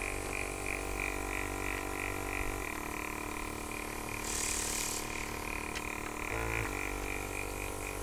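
Nail airbrush's small compressor running with a steady hum and a regular pulsing, with a short hiss of spray about four and a half seconds in.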